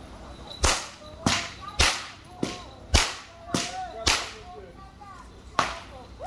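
Jab Jab masqueraders' long whips being cracked: eight loud, sharp cracks, about two a second for the first four seconds, then a pause and one more crack near the end.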